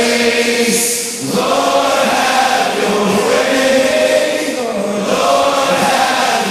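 A group of voices singing a slow Christian worship song in long held notes, with a short break between phrases about a second in.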